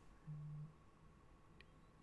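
Near silence: room tone, with one brief faint low hum about a quarter second in.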